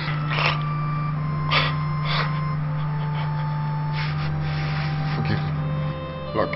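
A person gasping for breath several times, in short sharp bursts, over background music with a low drone and long held notes.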